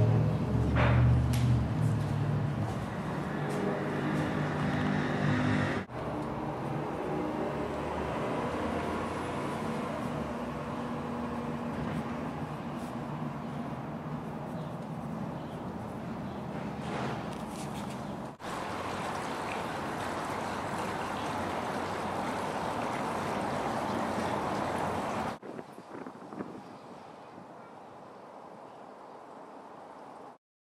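Background music dying away in the first couple of seconds, followed by steady rushing background noise that breaks off at sharp cuts twice and drops to a quieter hiss after a third cut near the end.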